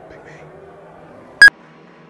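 A single brief, loud electronic beep about a second and a half in, over faint background voices.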